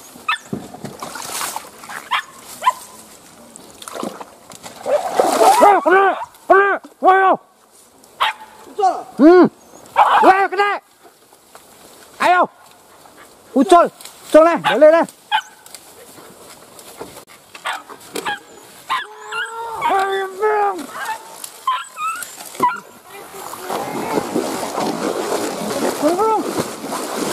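Hunting dogs barking in short groups of sharp barks, several times over, at an animal holed up in a den. A longer run of higher yelps comes later.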